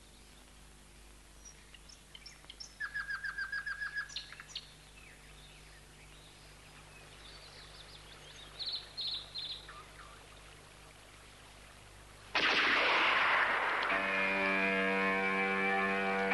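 Birds calling over a faint background hiss: a quick run of about eight repeated notes around three seconds in, and a few short high calls about nine seconds in. About twelve seconds in, a loud rushing wash of sound cuts in suddenly and gives way to music with held chords.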